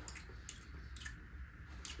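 A few faint, soft clicks and rustles as a small salt container is handled and salt is tipped onto a hand.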